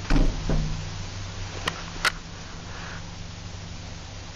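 Old 1955 Hävemeier & Sander lift: a heavy clunk, a second thump half a second later, then two sharp clicks about a second and a half on, over a steady low hum of the car in motion.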